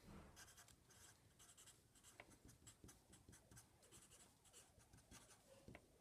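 Faint felt-tip marker writing on paper: a series of short, irregular pen strokes as a word is written in capitals.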